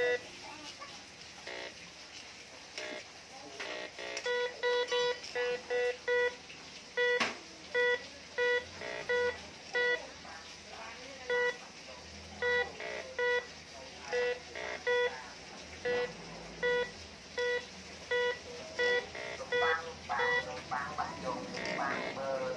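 Metal detector giving repeated short beeps of a single steady pitch, starting about four seconds in and coming mostly about two a second in runs with brief pauses, as its search coil is swept over chunks of ore. The beeps are the detector signalling metal in the rock.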